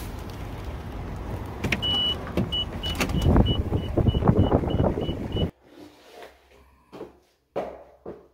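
Inside a car, a warning chime sounds one long beep about two seconds in, then short evenly spaced beeps about three a second, over low rumble and handling knocks. It cuts off suddenly, followed by a few soft knocks in a quiet room.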